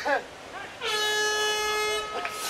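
An air horn blowing one long, steady blast starting a little under a second in, with short shouts just before it.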